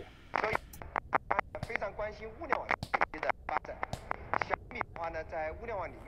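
Crystal radio receiving a Chinese-language broadcast: a talking voice, thinner and quieter than a person in the room, broken up by many sharp clicks and crackles.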